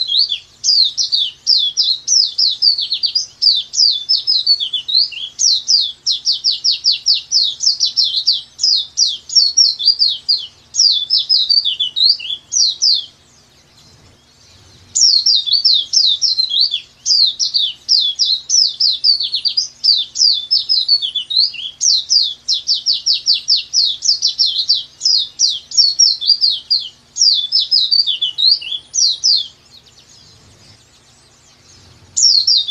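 Pleci dakbal (a white-eye) singing a long, fast run of high, sharp chirping notes with no break. The run stops about 13 seconds in, and after a pause of about two seconds the same song phrase plays again until near the end, like a looped training recording.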